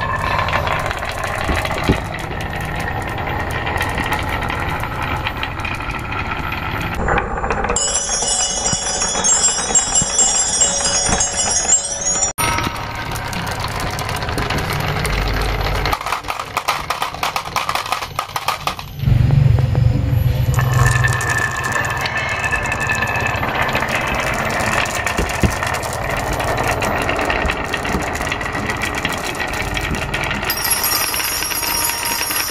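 Marbles rolling down carved wooden tracks: a steady rumble of rolling with dense clicking as the marbles knock against each other and the wood. The sound changes abruptly several times as one run gives way to the next.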